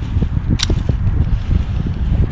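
Wind buffeting the camera's microphone: a loud, gusty rumble, with a brief click about half a second in.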